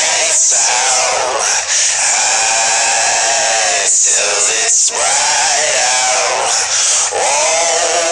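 A group of men chanting together in unison, in long drawn-out phrases that rise and fall in pitch, with short breaks between them.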